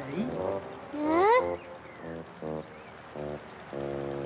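A voice rises sharply in pitch in an excited cry about a second in, followed by a few short, steady notes of background music.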